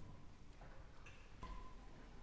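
Hushed concert hall between movements of a piano concerto: faint room tone with a few small clicks and rustles from the audience and stage, and no music playing.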